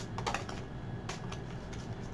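Oracle cards being handled as one is drawn from the deck: a few light, sharp clicks of card stock, three in the first half second and two more about a second in.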